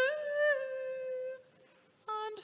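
A solo woman's voice carrying a slow hymn melody without accompaniment. She holds one long note that steps up slightly at the start and dies away about two-thirds of the way through, leaving a brief pause.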